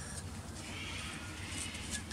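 Quiet workshop room tone with a faint, soft rustle as plastic pool-pump impellers are handled, about half a second to one and a half seconds in.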